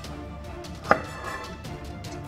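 Scissors snipping through fabric: one sharp snip about a second in, over soft background music.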